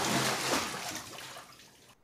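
Bathwater sloshing and trickling, loudest at first and fading out toward the end.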